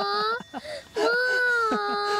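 A young woman's drawn-out, whining cries of dismay, "uso desho…" then a long "mō~", over a golf shot that has gone into a bunker. The two long wails each hold a steady pitch, with a short gap about half a second in.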